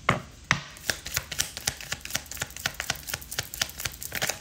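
Rapid, irregular light clicks and taps, several a second, with two louder knocks in the first half-second.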